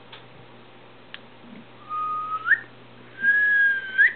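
A person whistling two short notes: the first, about two seconds in, holds a low pitch and then slides sharply up; the second, a little higher, holds for about a second and rises again at its end.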